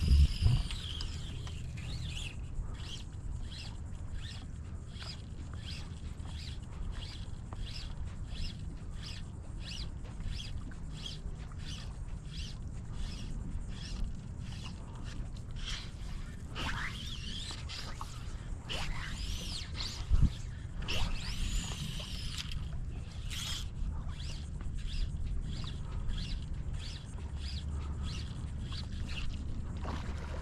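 Open-water ambience on a tidal flat: a steady low rumble under a rhythmic high chirping about twice a second. A few high calls that rise and fall come through around the middle.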